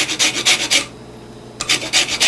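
Lemon peel being rubbed against a stainless-steel hand grater, zesting it: quick rasping strokes, about six a second, that stop for a moment midway and then start again.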